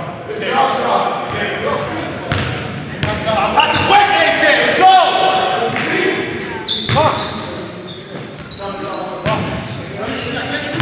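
Live basketball in a gym hall: a basketball bouncing on the hardwood floor, sneakers squeaking, and players shouting to each other.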